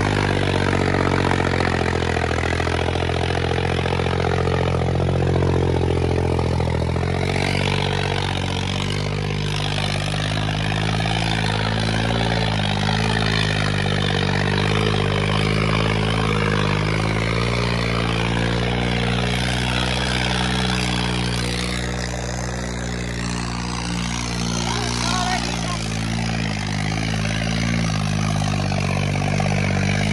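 Tractor diesel engine running hard at high revs with a steady, loud note while its rear wheels spin in loose soil. The note thins slightly about seven seconds in. Voices sound underneath.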